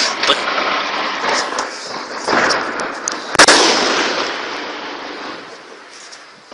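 Gunfire in a firefight: a few scattered rifle shots, then about three and a half seconds in a single loud report whose echo dies away slowly over the next two seconds.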